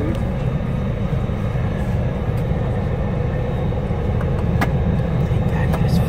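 Steady low rumble of a coach's engine and road noise heard from inside the passenger cabin, with a few sharp clicks, the plainest one past the middle.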